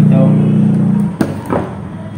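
A steady low hum stops a little after a second in; then two sharp clicks about a third of a second apart, from long-nose pliers working a wire onto a wall switch terminal.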